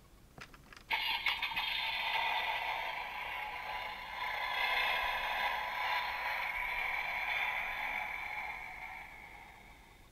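Battery-powered electronic sound effect from a Dickie Toys fire engine playing through its small built-in speaker, set off by the box's try-me button. It starts suddenly about a second in as a rough, noisy, tinny sound, holds for several seconds, then fades away near the end.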